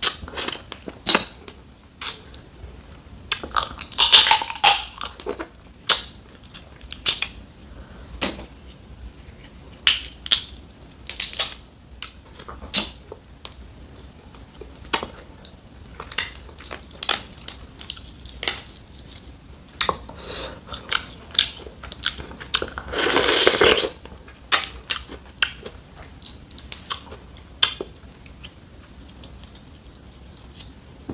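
Boiled snow crab leg shells cracked and broken apart by hand, a string of short sharp cracks and clicks, mixed with chewing of the crab meat. The loudest part is one longer crunching stretch about three-quarters of the way through.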